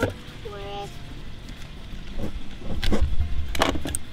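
Rustling and sharp knocks of hands working the cut end of a three-strand rope close to the microphone, loudest from about two seconds in.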